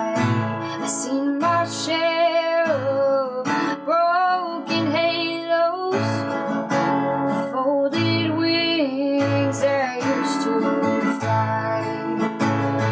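Acoustic guitar strummed as accompaniment to a woman singing a slow country ballad.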